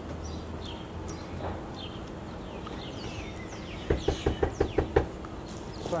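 A quick run of about eight knocks on a house's front door, starting about four seconds in and lasting just over a second. Birds chirp in the background throughout.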